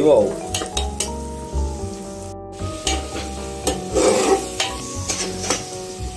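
Sliced onions sizzling as they fry in an open aluminium pressure cooker, with a metal spoon stirring and scraping against the pot in short clicks and knocks. A background music tune plays along.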